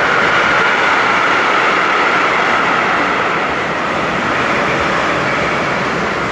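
Loud, steady rushing noise of a passing vehicle, easing slightly toward the end.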